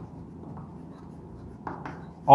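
White chalk writing on a chalkboard: faint scratching strokes, with a couple of sharper taps near the end.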